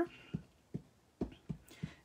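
A Memento ink pad dabbed repeatedly onto a stamp on a clear acrylic block to ink it, making about half a dozen light, soft taps.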